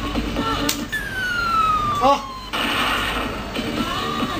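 A claw crane machine's electronic tune cuts off about a second in and is replaced by a long, smoothly falling electronic tone lasting about a second and a half. A brief hiss-like noise follows in the second half.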